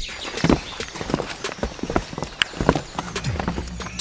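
Irregular clopping footsteps, a few knocks a second, as a group walks off down a trail.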